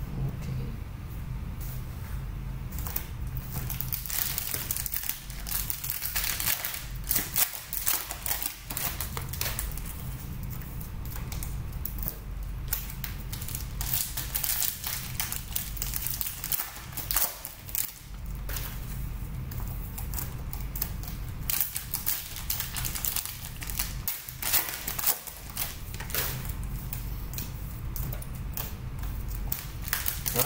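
Plastic trading-card pack wrappers being torn open and handled: a continuous, irregular run of crinkling and crackling, with a steady low hum underneath.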